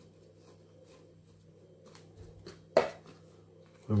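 Small metal hand fork working loose potting soil in a plastic plant pot: faint, scattered soft scratching, with one sharp knock nearly three seconds in.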